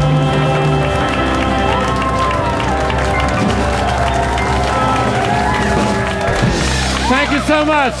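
A choir and band finish a song on a held final chord. The audience then applauds and cheers as the music winds down, and a man's voice starts up near the end.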